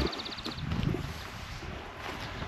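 Footsteps on grass, soft and irregular, with outdoor ambience.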